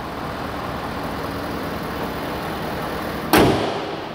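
Ford 6.7-litre Power Stroke turbo-diesel V8 idling steadily, then the hood is shut with a single loud bang a little over three seconds in, the loudest sound, after which the engine is more muffled.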